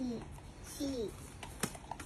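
Light clicks and taps of small plastic toy cups being handled, with one sharper click about one and a half seconds in. A toddler's short voice sounds come near the start and about a second in.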